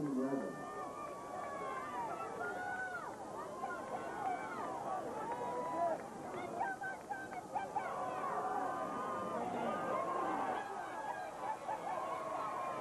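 Football game crowd: many voices shouting and calling out at once, with no single voice clear.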